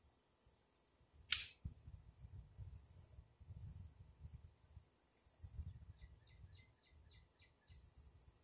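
A single distant pistol shot, a sharp crack about a second in: a .45 pistol fired down range. A faint low rumble lies under it, and near the end comes a faint quick series of ticks.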